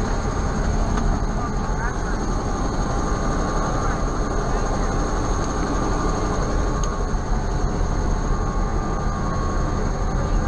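Helicopter running on the ground: a loud, steady low rumble with a steady high whine over it, heard at the open cabin door.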